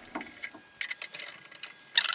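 Nut driver turning small 11/32-inch nuts off their studs. A quick run of light metallic clicks and scrapes starts about a second in.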